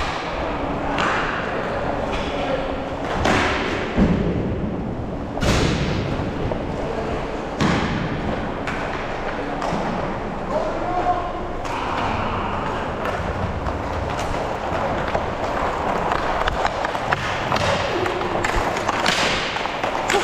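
Inline hockey in play on a plastic-tiled rink: skate wheels rolling and sticks and puck clattering on the tiles, with irregular sharp thuds scattered throughout.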